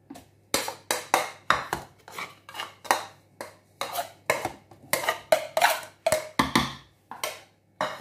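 Utensil knocking and scraping against a plate and the rim of a plastic blender jar as mashed potato is tipped and scraped into it: a run of sharp clinks and knocks, about three a second, starting about half a second in. The blender is not running.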